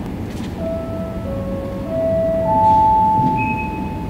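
Airport public-address chime before a boarding announcement: four bell-like notes, mid, lower, mid again, then the highest and loudest, each ringing on over the next.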